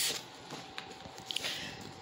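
Faint handling noise: soft rustling with a few light clicks, as a small cardboard product box and the camera are moved about.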